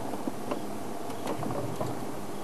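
Steady low hum of a safari game-drive vehicle's engine idling, with a few faint clicks over it.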